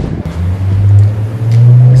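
A motor vehicle's engine running loudly with a steady low hum, which steps up in pitch about halfway through.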